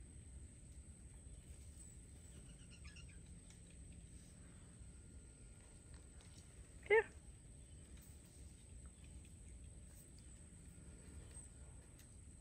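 Quiet outdoor background with a thin, steady high-pitched tone throughout. A woman gives a single short coaxing call of "Here" about seven seconds in.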